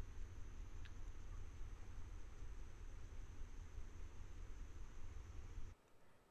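Faint steady background noise on a night trail-camera recording: a low rumble and hiss with a thin, unbroken high tone running over it. It cuts off suddenly shortly before the end.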